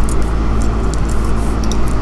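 Steady low hum and hiss of background noise, with a few faint clicks.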